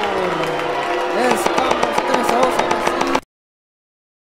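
A man's voice drawing out a shouted goal call, falling in pitch, then more vocalising over a quick run of sharp taps or claps; the audio cuts off abruptly a little over three seconds in.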